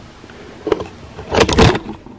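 Handling noise of a phone camera being grabbed close to its microphone: a short rustle, then a loud rubbing burst with a low rumble about one and a half seconds in.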